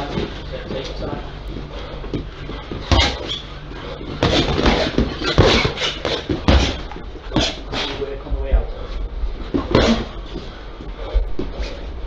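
Boxing gloves landing punches during sparring: a string of sharp, irregular thuds, several close together in the middle, over background voices.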